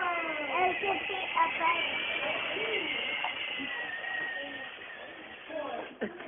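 Small battery-powered ride-on toy quad's electric motor whining with a steady high pitch that sinks a little as it slows, overlaid by voices early on.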